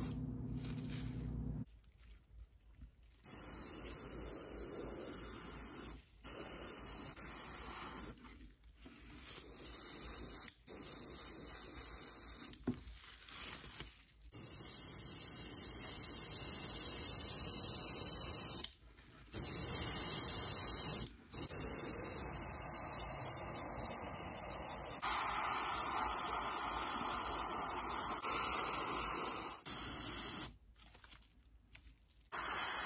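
An airbrush spraying paint in on-off bursts with short breaks between, the bursts longer and louder from about the middle on.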